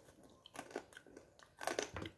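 A person chewing food close to the microphone, with a series of short crunchy bites; the loudest few come close together near the end.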